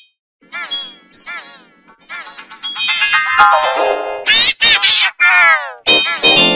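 Intro jingle audio run through heavy distortion effects. It begins with two short warbling, pitch-bent bursts. From about two seconds in it becomes a dense run of tones with sweeping falling and rising glides, cut off abruptly several times near the end.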